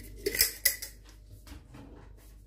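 Cutlery clinking against dishes: several sharp clinks in the first second, then quieter.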